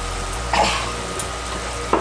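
Chopped sponge gourd (gilki) cooking in its own released water in a nonstick kadai over a gas burner, a steady sizzle with a low hum under it. A brief louder sound comes about half a second in.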